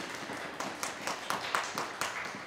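Audience applauding, a steady patter of clapping.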